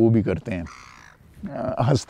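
A man's voice, drawn out and not formed into clear words, in two stretches: at the start and again near the end.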